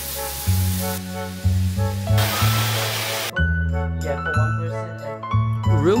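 Overhead rain shower head spraying water: a steady hiss for about three seconds that stops abruptly, laid over background music with a steady bass line.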